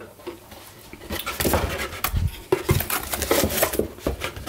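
Cardboard box and its foam insert being handled: irregular rustling and scraping with a few sharp knocks and clicks, starting about a second in.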